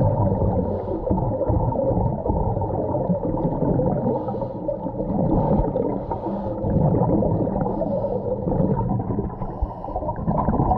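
Underwater sound heard through a GoPro's waterproof housing: a continuous muffled rumble with gurgling, its level swelling and falling irregularly.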